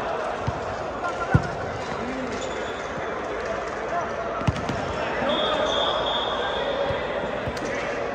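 Volleyball rally: a few sharp slaps of hands and arms on the ball, the loudest about a second and a half in and another about four and a half seconds in, over players' voices in a large gym hall, with a brief high squeak of a shoe on the court floor near the middle.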